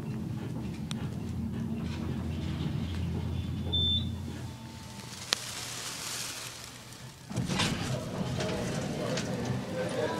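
Schindler hydraulic elevator car travelling down with a steady low hum that fades out about four to five seconds in. A short high beep comes just before the hum ends. From about seven seconds, background voices come in.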